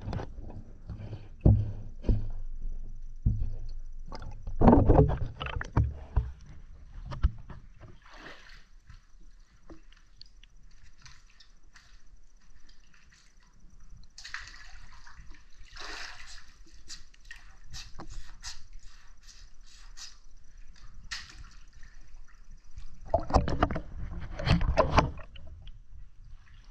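Water sloshing around shoe-clad feet soaking underwater, heard muffled through a camera under the surface. There are knocks and thumps in the first few seconds, then a quieter stretch of bubbly crackling and clicks, and heavy sloshing again near the end.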